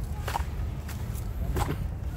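Footsteps crunching on a layer of dry fallen leaves, a few sharp steps with the loudest near the end, over a steady low rumble.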